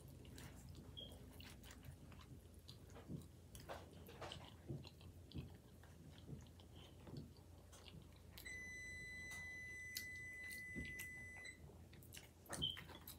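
Quiet wet chewing and mouth clicks from a person eating, with light clicks of a fork working at a burrito on a plate. For about three seconds near the end, a steady high electronic beep sounds.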